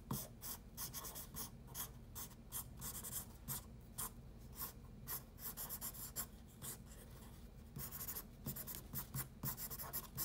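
Graphite pencil sketching on paper: many quick, irregular scratchy strokes, over a low steady hum.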